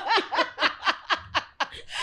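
A person laughing, a run of short ha-ha pulses at about five a second that fade out near the end.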